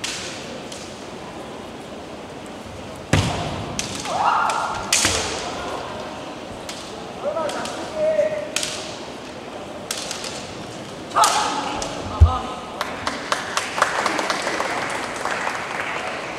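Kendo bout: sharp cracks of bamboo shinai striking, with short shouted kiai from the fencers after the strikes, and a deep stamp of a foot on the wooden floor. Near the end comes a rapid run of light clacks as the shinai knock together.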